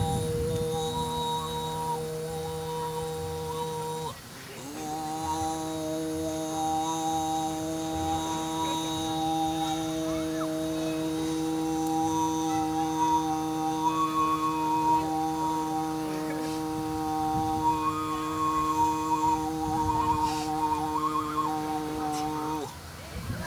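Overtone singing: a sustained low vocal drone with a high, whistle-like overtone above it that steps from pitch to pitch like a melody. The drone dips briefly about four seconds in, then resumes and holds until near the end.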